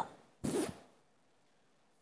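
A short whoosh transition sound effect for a news-bulletin graphic: one brief rushing swish with a soft thump at its start, about half a second in.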